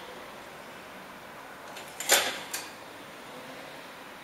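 A wooden hand loom knocking: one sharp knock about halfway through, followed by a lighter second knock half a second later, over a steady low hiss.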